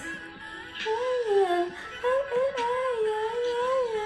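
A young woman's voice singing a wordless, hummed melodic run with a slow wavering vibrato, the melody sliding up and down.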